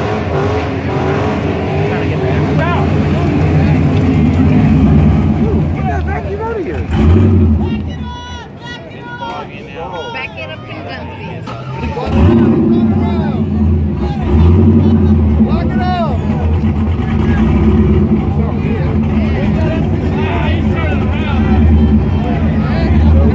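Car engines running loud and close, with crowd voices around them; the engine noise drops away for a few seconds in the middle, leaving the crowd's chatter and calls, then comes back loud about twelve seconds in.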